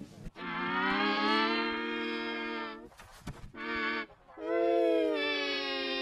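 A microwave oven running, its hum pitch-shifted and distorted by a video-editor effect into long held, chord-like buzzing tones. One tone is held for about two and a half seconds, a short one follows, and another starts about four and a half seconds in.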